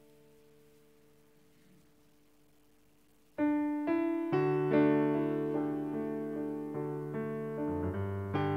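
Piano starting the introduction of a hymn: a faint held chord dies away, then about three and a half seconds in the playing begins suddenly, with chords under a melody line.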